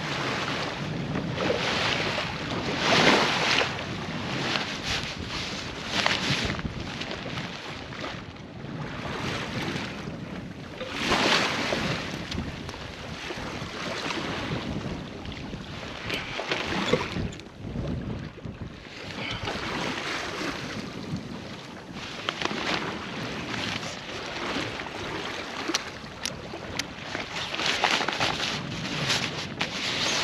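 Water rushing along the hull of a small sailboat under sail, swelling in surges every few seconds, with wind buffeting the microphone.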